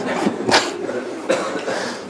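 Short breathy, cough-like bursts of a human voice with no words: a sharp one about half a second in and a softer one around a second and a half.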